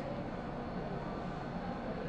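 Steady background noise, an even hiss and low hum with no distinct events: room tone.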